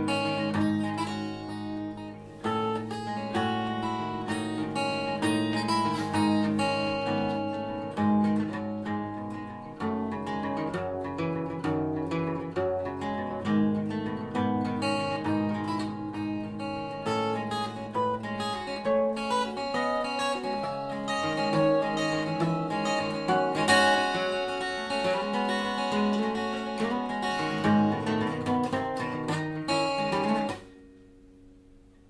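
Takamine ETN10C cutaway steel-string acoustic guitar played fingerstyle, a continuous piece of dense plucked notes and chords. The guitar has just had a week of ToneRite vibration treatment meant to open up its tone.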